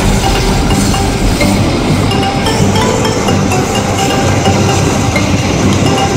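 Background music laid over the rumble of a passing passenger train on the rails.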